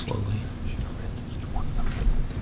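Low, indistinct voices of people talking quietly away from the microphones, over a steady low hum.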